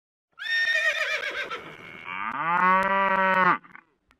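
A horse whinnies with a high, wavering call, then a cow moos in one long call that rises and holds steady, starting about two seconds in.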